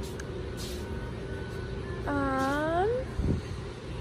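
Big-box store room tone with a steady low hum. About two seconds in, a person makes one short drawn-out vocal sound, under a second long, that rises in pitch at its end, followed by a soft thump.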